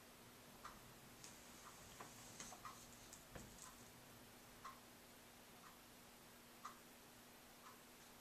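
Wall clock ticking softly, one tick a second, over a low steady hum in an otherwise quiet room, with a few faint rustles a couple of seconds in.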